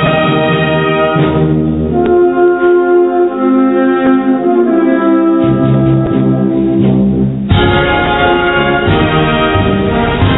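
A Spanish wind band (banda de música) playing a slow Holy Week processional march, with brass holding sustained chords. About seven and a half seconds in, the full band comes in at once, fuller and deeper.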